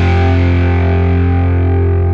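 Rock band's distorted electric guitar chord held and ringing out over a strong low note, its bright upper end slowly fading away.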